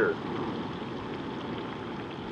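Breaded mountain oysters deep-frying in hot peanut oil, a steady sizzle.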